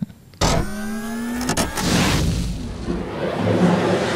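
Electronic sound effect of a closing logo sting: a sudden rising whine for about a second, then a whooshing swell that fades away.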